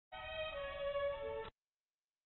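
Brief snatch of music heard over a conference-call phone line, sustained notes whose lowest one drops in pitch near the end. It cuts off suddenly about a second and a half in.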